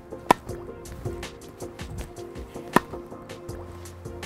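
Background music with two sharp pocks about two and a half seconds apart: a tennis ball struck by a racket on the volley.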